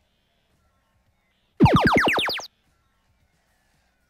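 FRC Power Up field sound effect for the boost power-up being activated: a single synthesized tone sweeping steeply upward in pitch, lasting just under a second from about a second and a half in, then cutting off.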